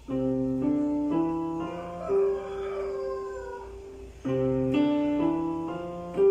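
Piano five-finger exercise played with both hands together: five notes stepping upward at about two a second, the last one held for about two seconds, then the run starting again about four seconds in.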